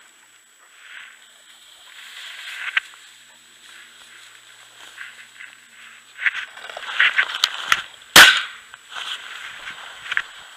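Shotgun fired once, a single loud shot a little past eight seconds in, with a short echo after it. Before it, tall dry grass brushes and rustles against the hunter walking through it.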